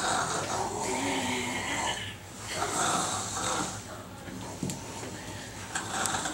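A boy snoring: two long snores in the first four seconds, then quieter.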